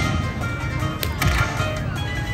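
Dragon Link Happy & Prosperous slot machine playing its electronic bonus-round music, with a sharp click about a second in as the next free spin starts the reels turning.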